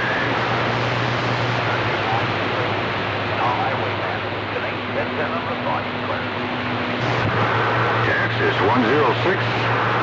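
CB radio receiving long-distance skip on channel 28: loud, steady static with faint, garbled voices of distant stations breaking through. A low hum runs under it and drops out for a few seconds midway.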